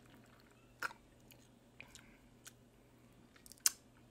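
Mouth sounds of a man drinking sake through a juice-box straw and tasting it: a few soft clicks and lip smacks spread out, the loudest near the end.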